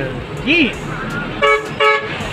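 Two short toots of a vehicle horn, about a third of a second apart, a second and a half in. About half a second in comes a brief call that rises and falls in pitch.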